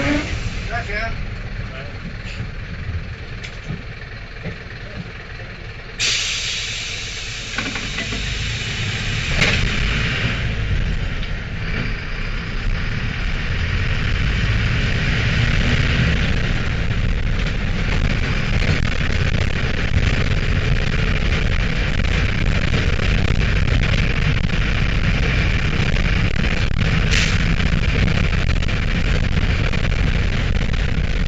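Mercedes-Benz LO-914 minibus heard from inside the cabin, its OM904 four-cylinder diesel running at a low, quieter level at first. A sudden hiss comes about six seconds in. The engine then pulls away and grows louder, running steadily from about fourteen seconds in.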